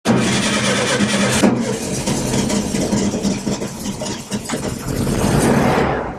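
A car engine running loudly and steadily, with a sharp click about a second and a half in.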